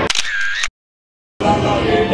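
A brief high sound with a pitch that dips and rises, then a moment of dead silence at an edit, then dark-ride soundtrack music with singing starting a little past halfway through.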